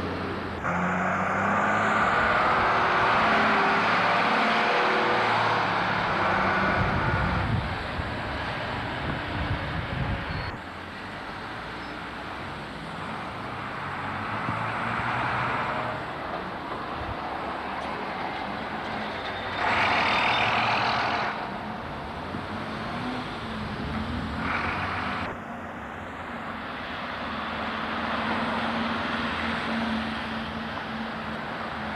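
Diesel engines of single-deck buses running and driving past close by, with surrounding road traffic, in several short recordings joined by abrupt cuts. About twenty seconds in there is a brief louder rush of noise.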